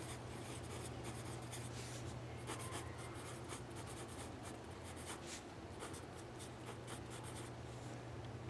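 A pen writing on ruled journal paper: a run of short, faint scratching strokes as a line of words is written, stopping near the end.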